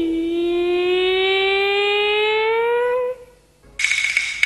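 A Huangmei opera performer's long, drawn-out sung call of '领旨' ('I accept the edict'): one held note about three seconds long that dips at first and then slowly rises before breaking off. Near the end the opera's percussion strikes up, clattering with a ringing gong-like tone.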